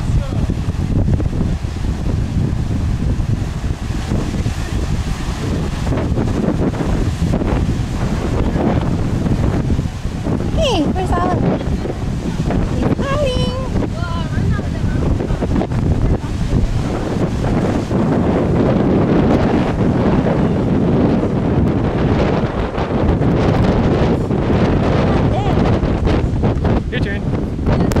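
Wind buffeting the microphone over the steady wash of ocean surf breaking on the rocks.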